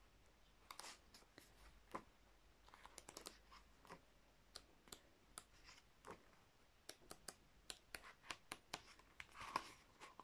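Faint handling sounds of a glossy album photo book's pages being turned by hand: scattered soft paper clicks and rustles, a little louder near the end.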